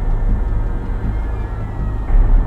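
Dark, steady low rumbling drone from a horror trailer's score, loud and dense with no clear melody.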